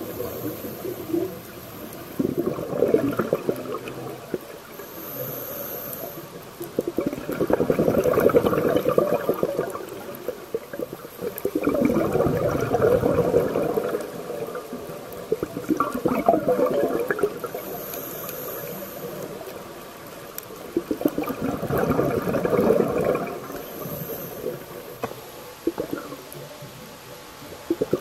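Scuba diver's exhaled bubbles rushing and gurgling past an underwater camera, swelling with each breath about every four to five seconds, with a brief hiss from the regulator on some in-breaths.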